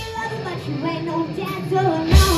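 A boy singing lead vocals into a microphone with a live rock band. The drums drop out under the voice, leaving a thinner backing.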